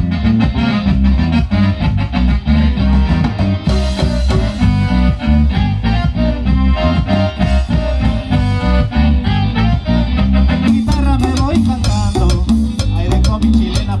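Live band playing an instrumental passage of a chilena: a strong rhythmic electric bass line under electric guitar and keyboard melody, with a drum kit keeping a steady dance beat. The percussion gets busier about three quarters of the way through.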